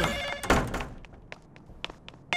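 A telephone ringing with an electronic trill that stops about half a second in, followed at once by a heavy thunk, then a few light taps.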